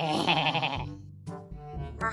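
Background music in an edited animal video, opening with a short, loud, quavering cry that lasts under a second.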